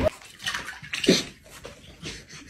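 A pet dog making a few short sounds, the loudest dropping in pitch about a second in, amid rustling.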